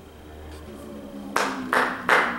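Hands clapping close by, beginning about a second and a half in with loud, evenly spaced claps, about three a second. This is applause at the end of a recited poem.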